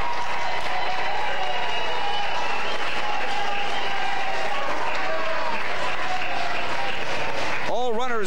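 Ballpark crowd clapping and cheering, a steady wash of noise with scattered shouts from the stands.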